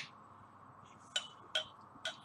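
Two short, light glassy clinks about a third of a second apart, from a glass beer bottle and glassware being handled on a table.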